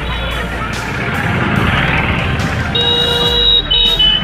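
Busy street traffic with motorcycle engines running and crowd noise. Near the end a high electronic tune of short repeating notes comes in over it.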